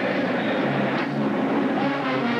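A marching band's brass section playing held, chord-like notes that move from one pitch to the next.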